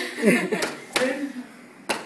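Bare-fist karate punches smacking into a man's body through his gi: three sharp slaps at uneven intervals, with a voice exclaiming and laughing between them.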